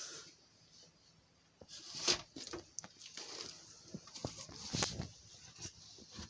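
Rummaging among stored household items by hand: scattered light knocks, taps and rustles as things are moved, after a brief quiet spell near the start.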